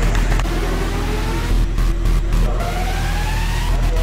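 Background trailer music with a steady low bass, over which two rising sweeps each climb for about a second, one early on and one late.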